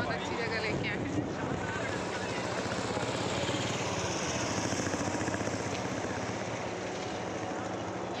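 Steady rushing wind noise on the phone's microphone, swelling in hiss around the middle, with a few spoken words in the first second.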